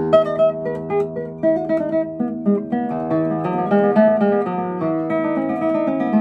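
Traditional-build classical guitar by luthier Roman Blagodatskikh played fingerstyle: a chord rings on, then a flowing run of plucked notes and arpeggiated chords. Its tone is clear, crystal and well balanced.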